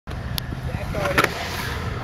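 Skateboard wheels rolling over a concrete bowl with a steady low rumble, with a couple of sharp clicks, the louder one just over a second in.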